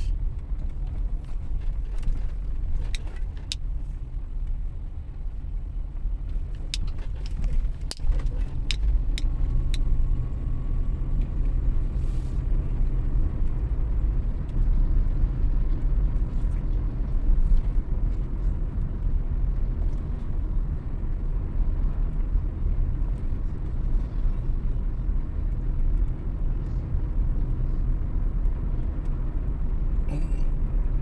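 Car cabin noise while driving: a steady low rumble of engine and tyres on the road, with a few light clicks in the first ten seconds.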